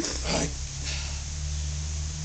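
A man's short pained cry of "ay!" as he grapples with a boa constrictor, then a brief hiss-like noise, over a steady low rumble.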